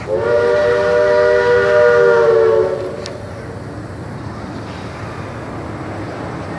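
A multi-tone whistle sounds one long, loud chord of several notes for about two and a half seconds, then cuts off, over steady background noise.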